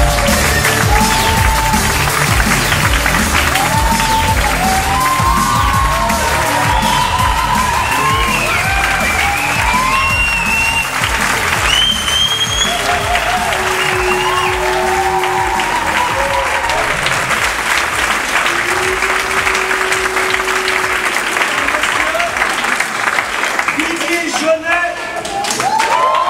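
Audience applauding and cheering, with scattered whoops, over electronic music whose heavy beat thins out in the second half.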